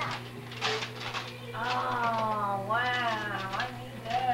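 Two drawn-out, high-pitched vocal cries about halfway through, the second rising and then falling, like a whine or meow.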